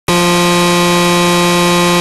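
A loud, distorted electronic buzzing tone with hiss, one held note that does not change pitch: the opening sound of a slowed Brazilian phonk track.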